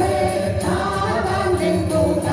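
Two men and two women singing a song together into handheld microphones, their voices amplified through a PA, with music behind them.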